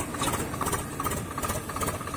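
Farm tractor engine running steadily while it pulls a seed drill through the soil, with a rapid low pulsing.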